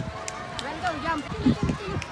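Background voices of people talking at a distance, fainter than close speech, with a brief steady tone in the first second.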